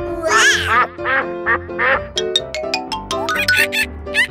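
A cartoon duck quack sound effect, loudest about half a second in, over bouncy background music that breaks into quick, short staccato notes in the second half.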